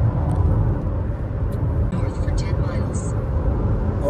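Steady low rumble of road and engine noise inside the cabin of a Honda driving at highway speed, with a short high hiss about three seconds in.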